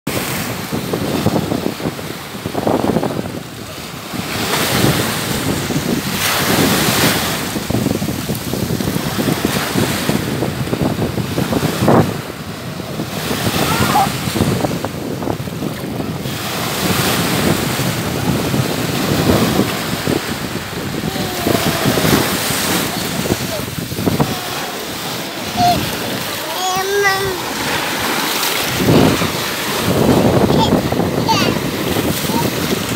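Small sea waves breaking and washing over the sand at the water's edge, the rush swelling and easing every few seconds. Voices call out in the background, a high voice rising and falling near the end.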